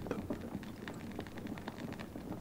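Faint crackling hiss with many small irregular ticks.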